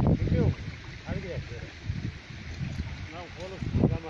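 Short bursts of a person's voice over steady wind rumble on the microphone.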